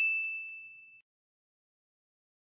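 A single bell-like ding sound effect, struck just before and ringing out as one clear high tone that fades away about a second in.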